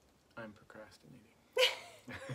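Short wordless vocal sounds from a person, then one loud, brief cry about one and a half seconds in.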